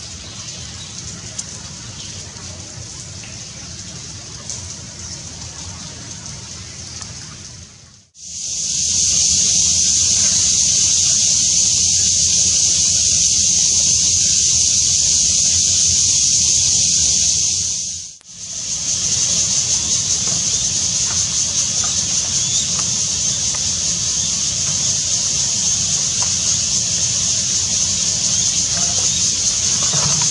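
Rain falling steadily, with a light patter, for the first several seconds. Then, from about eight seconds in, a loud steady high-pitched hiss of outdoor ambience among the trees, broken by a brief gap about eighteen seconds in.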